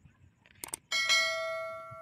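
Subscribe-button animation sound effect: two quick mouse clicks about half a second in, then a notification bell ding that rings on several pitches and fades slowly.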